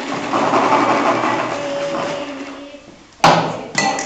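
Breath blown into an empty plastic water bottle: a rushing hiss with a faint low note that fades out. A little after three seconds a drinking glass is struck and rings, and a second, lighter strike follows near the end.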